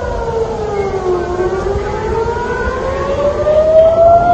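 Civil-defence air-raid siren wailing as an alert for an incoming rocket attack. Its pitch falls for about the first second, then rises slowly through the rest.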